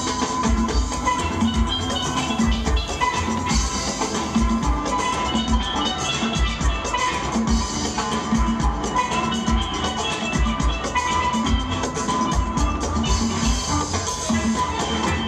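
A steel orchestra playing live: many steel pans ringing out a fast melody and chords over a steady, regular low beat.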